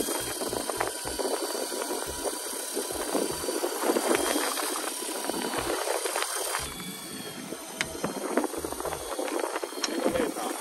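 Electric deep-sea fishing reel winding line up from depth with a steady motor whine, under wind buffeting and sea noise.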